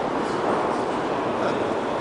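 Steady, echoing background din of a large stone hall, with indistinct distant voices.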